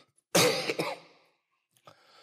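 A man coughing once into a close handheld microphone, a sudden loud cough about a third of a second in that trails off within about half a second.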